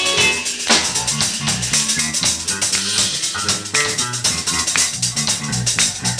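A live band playing an instrumental funk groove: electric guitars, a moving electric bass line and a drum kit with steady cymbal strokes.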